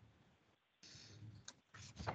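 Near silence, with a few faint clicks and a single sharper click about one and a half seconds in.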